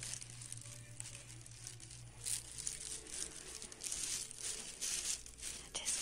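Irregular rustling and scraping handling noise from a hand-held phone being carried while walking, over a low steady hum that fades out about two and a half seconds in.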